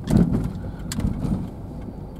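Low, steady rumble of a running car heard from inside the cabin, with a few bumps and rustles of handling near the start and a sharp click about a second in.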